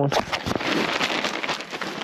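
Camouflage clothing and a lanyard rustling and rubbing right against the camera's microphone as the camera is handled, a steady scratchy noise with no calls in it.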